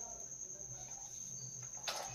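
Steady high-pitched insect trill, with one faint click near the end.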